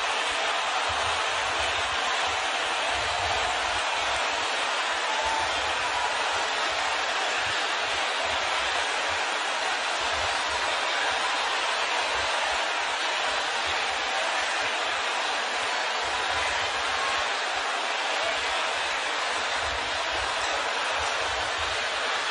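A large congregation praying aloud all at once, many voices merging into a steady, even wash with no single voice standing out.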